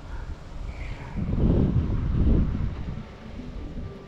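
Wind buffeting the microphone, a low rumble that swells about a second in and eases off near the end.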